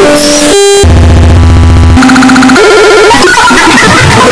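Loud, heavily distorted, effects-processed audio: a harsh chain of held buzzing tones that jump abruptly from pitch to pitch. A heavy low buzz enters about a second in and lasts about a second.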